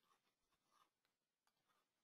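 Near silence: the audio track is effectively empty.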